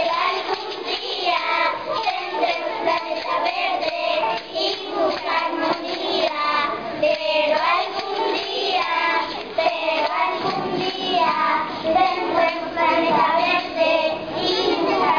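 A group of young children singing a song together in Spanish, continuously.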